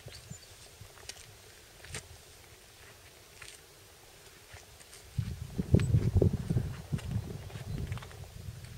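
Low, irregular rumbling buffeting on the camera microphone, starting a little past the middle and lasting about two seconds, with a few faint clicks before it.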